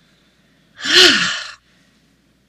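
A woman's single audible exhale, a breathy sigh with a slight voiced rise and fall, lasting under a second about a second in: the last of six paced breaths.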